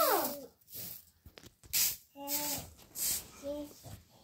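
A toddler babbling: a few short, high-pitched vocal sounds with breathy noises between them and quiet gaps.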